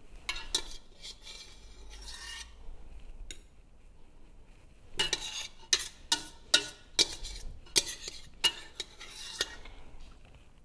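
Metal spoon scraping around the inside of a stainless steel stockpot to gather the last of the cooked carrot salsa, then clinking sharply against the pot about ten times in the second half.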